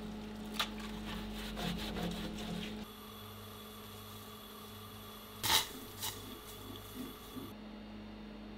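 A steady low appliance hum under light clicks and knocks of a wooden spoon stirring in a pot. The hum drops in level about three seconds in, and there is one sharper knock past the middle.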